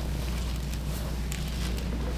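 Steady low hum under faint rustling and soft clicks of clothing and body shifting as a chiropractor sets a supine patient with crossed arms for a thoracic adjustment.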